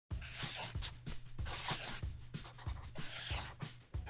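A pen scribbling across a drawing surface in quick, irregular scratchy strokes.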